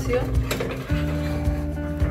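Background music with sustained low notes, and a single metallic clink of a saucepan moved across a gas stove's grate about a quarter of the way in.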